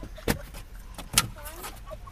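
Car engine idling, heard from inside the cabin, with two sharp clicks about a second apart.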